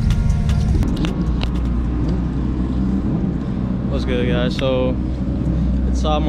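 Music stops just under a second in, giving way to a steady low rumble, with a brief bit of a man's voice about four seconds in.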